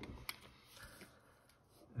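A faint click as a pen is handled over a desk, with a couple of tiny ticks after it, then near silence.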